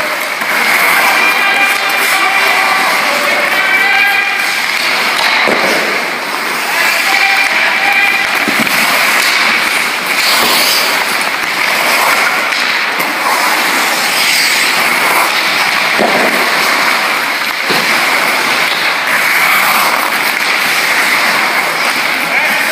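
Ice hockey skating drill in a rink: skate blades carving and scraping the ice through continuous noisy rink ambience, with sharp knocks of stick on puck several times, and indistinct voices in the background.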